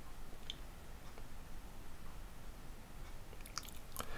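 Faint computer keyboard keystrokes over low room hiss: a couple of isolated key clicks early on, then a quick run of clicks near the end.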